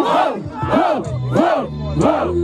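Host and crowd chanting a short rising-and-falling call together in a steady rhythm, about two shouts a second, the host's voice through a microphone and PA.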